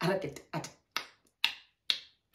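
A woman laughing in short, sharp bursts, about two a second, each breathy burst cut off quickly.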